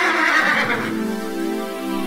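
A horse's whinny laid over music, ending in a steady held chord that takes over about a second in.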